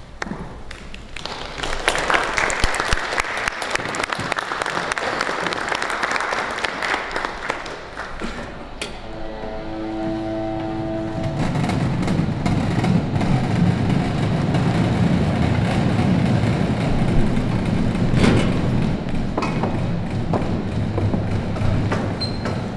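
Theatre audience applauding through a blackout scene change. About nine seconds in, a steady horn-like tone sounds for a couple of seconds, then a low rumbling noise takes over.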